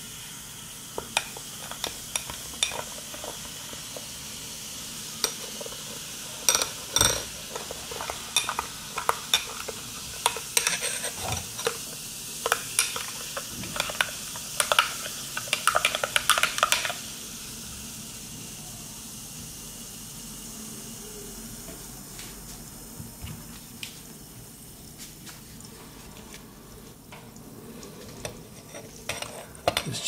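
Metal spoon stirring in a drinking glass, clinking against the glass over and over, over the fizz of baking soda reacting in citric acid solution. About halfway through, the clinking stops and a quieter fizz is left with an odd tap.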